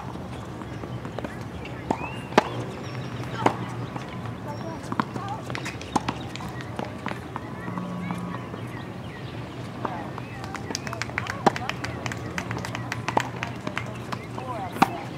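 Tennis ball struck by racquets and bouncing on a hard court: single sharp pops a few seconds apart, then a quick run of hits, bounces and footfalls in the last few seconds as a rally is played. Faint voices of people nearby run underneath.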